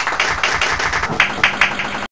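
Audience applauding: a dense run of hand claps, with a few louder single claps standing out.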